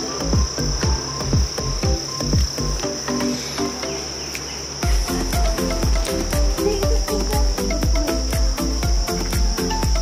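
A steady, high-pitched insect drone over electronic background music with a regular kick-drum beat; the beat drops out for about two seconds near the middle.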